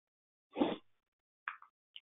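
Brief mouth sounds from a man pausing between sentences over a web-conference line: a short breathy burst about half a second in, then a small smack about a second later, with silence around them.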